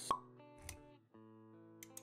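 Intro background music with held chords, punctuated by a sharp pop sound effect right at the start and a short low thump about half a second later.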